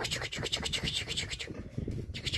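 Close scratchy rustling and rubbing, a rapid irregular run of small clicks that thins out about a second and a half in.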